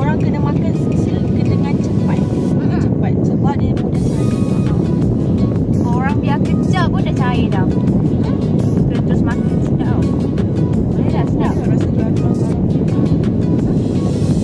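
Car air-conditioning blower running inside the cabin: a loud, steady rushing noise that drowns out everything else.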